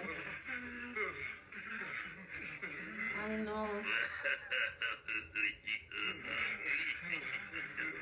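Audio of a Spanish-dubbed anime episode: a male character's voice speaking and chuckling over a continuous soundtrack of effects and music.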